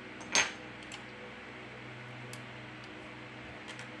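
A single sharp metallic click with a short ring about half a second in, then a few faint ticks: small metal parts or tools handled while taking apart a phone. A low steady hum runs underneath.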